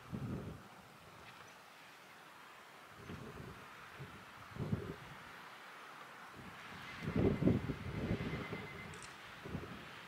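Wind buffeting the microphone in irregular low gusts, the strongest about seven to eight seconds in, over a faint steady hiss of wind.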